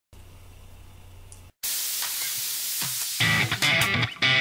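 Intro sequence: a faint low hum, a sudden cut, then a loud static-like hiss for about a second and a half, giving way a little after three seconds in to guitar-led intro music.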